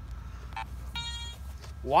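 Metal detector giving steady electronic tones: a short beep about half a second in, then a longer one about a second in.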